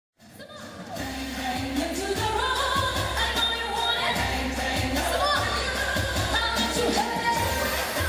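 A woman singing a pop song live into a handheld microphone, amplified over a backing track with a steady bass beat. The sound fades in during the first second.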